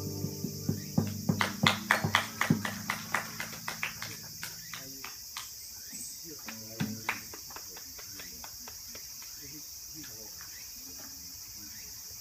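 The last chord of a nylon-string guitar and a lap dulcimer rings out and fades over the first few seconds while a small audience claps, the scattered applause thinning out and stopping about five seconds in. Faint murmuring follows over a steady high hiss.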